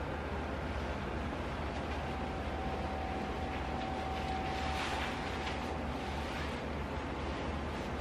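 Steady room noise: a low hum with an even hiss, and faint rustling about halfway through.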